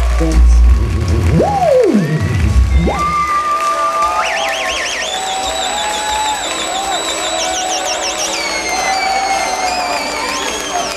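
Electronic noise from a rock band's stage gear at the close of a set. A deep bass rumble stops about half a second in. High whining tones then swoop down and back up, hold as a wavering tone, and climb in steps to shrill pitches with a fast wobble.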